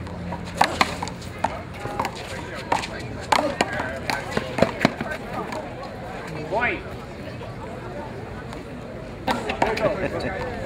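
Sky Bounce rubber handball smacking off hands, the wall and the concrete court during a rally: a string of sharp smacks through the first five seconds, and a few more near the end.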